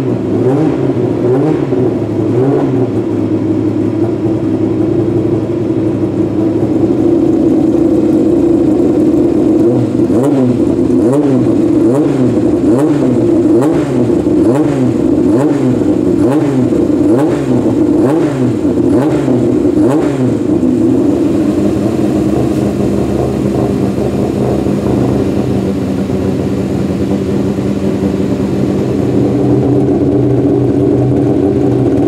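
BMW 3.0 CSL Group 2 race car's 3.2-litre straight-six running and being warmed up with repeated throttle blips, about one a second through the middle, with sharp cracks from the exhaust. Near the end it settles into steadier running.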